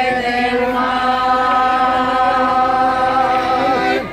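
Folk choir of women and men singing unaccompanied, holding one long closing chord; a lower part joins about a second and a half in, and the voices cut off together at the end.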